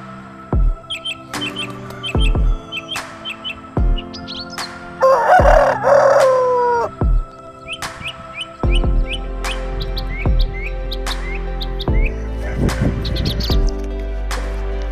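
A hard-feathered gamefowl rooster crows once, about five seconds in: one long call that drops in pitch at the end. It sits over background music, with small bird chirps.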